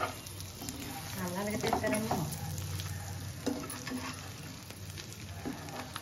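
Masala-coated boiled eggs sizzling in hot oil in a pan while a steel spoon stirs and turns them, with scrapes and clicks of the spoon against the pan. A short pitched sound comes between about one and two seconds in.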